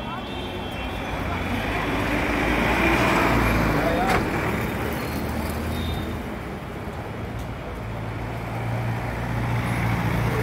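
City street traffic noise: engines running and vehicles passing, with a steady low engine hum that grows stronger near the end and indistinct voices of people in the street.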